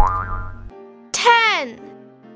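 Cartoon sound effects over light children's background music: a short rising sound with a low rumble at the start, then a loud falling boing-like glide about a second in that drops in pitch over half a second.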